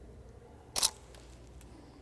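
DSLR camera shutter firing once, about a second in: a single short, sharp click.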